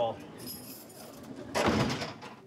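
Keys jangling at a holding-cell door as it is shut and locked: a faint high metallic ring about half a second in, then a louder rattle of keys and door near the end.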